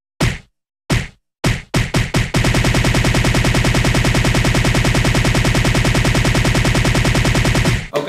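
An edited sound effect: one short, sharp hit repeated, about a second apart at first, then faster and faster until it becomes a rapid stutter of many hits a second, which cuts off suddenly just before speech resumes.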